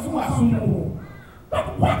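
A man's voice preaching loudly through a microphone, with a short pause just past the middle before he speaks again.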